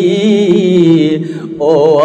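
A Rohingya tarana, an Islamic devotional song: a voice holds a long wavering sung note over a steady low drone, dips briefly, then starts the next line of the refrain near the end.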